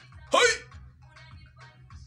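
A man's short, loud vocal cry about a third of a second in, falling steeply in pitch, followed by faint, broken mumbling.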